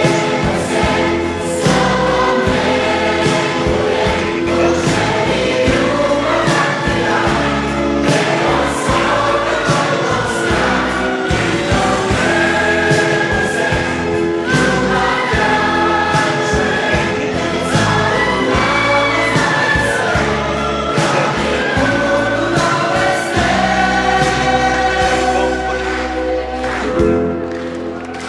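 A mixed choir singing a song together with instrumental accompaniment and a steady beat.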